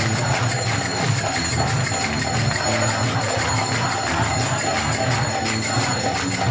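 Kirtan music: a mridanga drum beating a steady rhythm under rapid, evenly struck karatalas (small brass hand cymbals), with a crowd chanting along.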